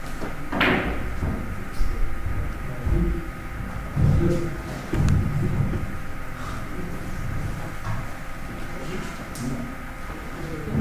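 Billiards-hall room noise: several dull thumps and a few light, sharp clicks, with one louder scraping knock about half a second in.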